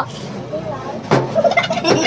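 A plastic bottle landing with a sharp knock on a steel tabletop about a second in, followed by men laughing.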